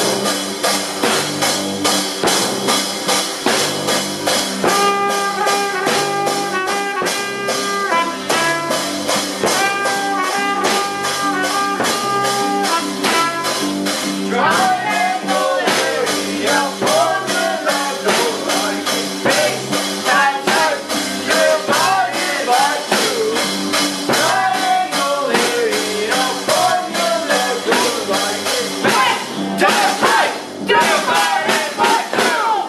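Small live band playing a song on trumpet and ukulele over a steady beat. A held trumpet melody comes first, then voices sing from about halfway.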